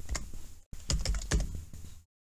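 Typing on a computer keyboard: a quick run of key clicks with a short break about two-thirds of a second in, then more clicks.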